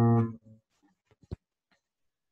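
A guitar note or chord ringing, cut off suddenly a fraction of a second in, as a video call's audio does. One faint click follows about a second later.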